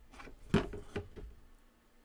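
Faint handling noise of a cardboard Lego set box being picked up and turned over in the hands, a few soft brushes and taps in the first second, with a single spoken word about half a second in.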